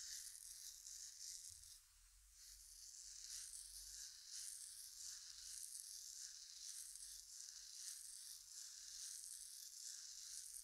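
Faint rustling of fingers kneading the back of the neck and working into the hair at the base of the skull, in soft swells about twice a second, with a short lull about two seconds in.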